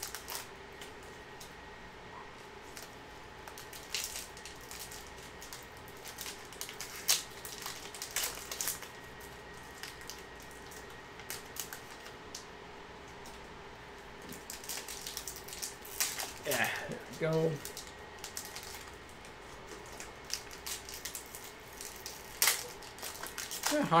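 Foil hockey-card packs being torn open and handled: crinkling wrapper foil with sharp rips and crackles at irregular moments, over a faint steady hum.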